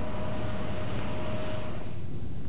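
Steady low rumble of harbour machinery, with a faint thin tone that stops near the end.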